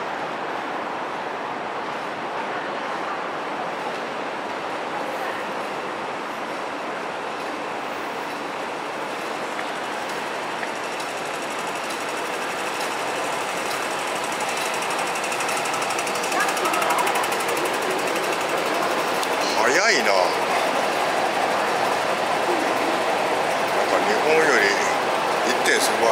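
Steady mechanical rattle and hum of a running escalator, growing louder toward the end, with a short sharp sound near the end.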